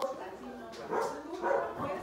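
German Shepherd vocalizing with a few short, pitched sounds around the middle.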